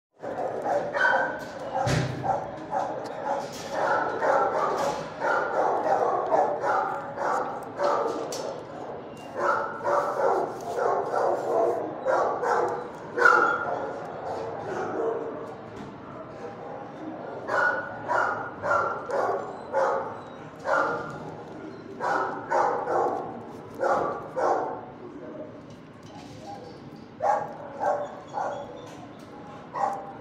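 Shelter dogs barking in their kennels, bark after bark, several a second at times, with brief lulls.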